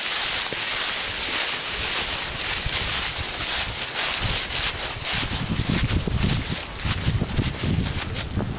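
Footsteps crunching and rustling through a thick layer of dry fallen leaves, with wind rumbling on the microphone, heavier from about halfway through.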